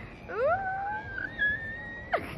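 A person's high-pitched wail that slides up quickly, holds one long note that creeps slightly higher, and breaks off with a sharp drop at the end.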